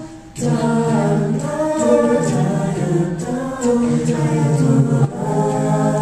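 High school vocal jazz ensemble singing a cappella in close harmony. The sound drops briefly right at the start, then comes back in with held chords.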